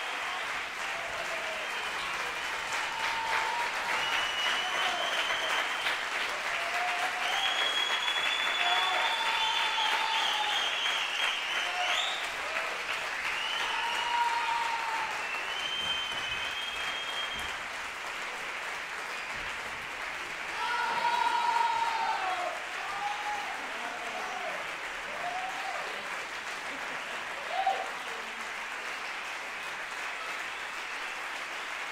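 Concert audience applauding steadily at the end of a piece, with cheering voices calling out and several long, high whistles over it in the first half; the applause swells briefly about two-thirds of the way through.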